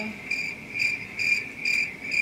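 Cricket chirping: a steady high trill with pulses a little over twice a second.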